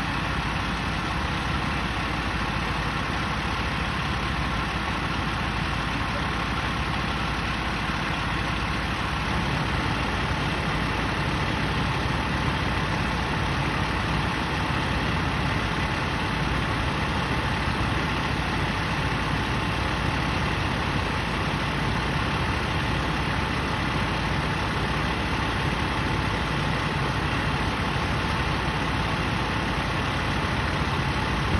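A parked fire truck's diesel engine idling steadily, a constant even rumble with faint steady tones above it.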